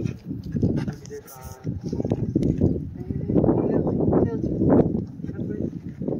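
Young children's voices, talking and calling out indistinctly, with a short drawn-out cry a little over a second in.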